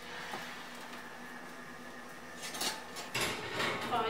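Wall oven being opened and the dish of stuffed squash taken off the rack, with a few short clinks and scrapes of metal and dish near the end.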